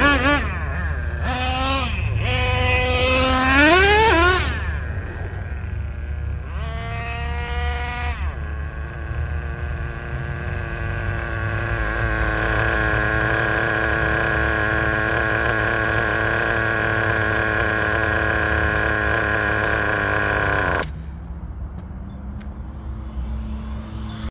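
A Traxxas Revo 3.3 nitro RC truck's small glow-fuel engine revs in quick rising and falling bursts as it is driven. It then runs at a steady high-pitched idle for several seconds, and near the end the sound drops much quieter.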